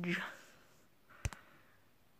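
A single sharp click, followed at once by a fainter one, a little over a second in, against a quiet room.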